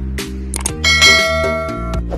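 A bell-like ding sound effect about a second in, ringing for most of a second, over music with a steady beat; the kind of chime that marks a subscribe button being pressed and the notification bell switched on.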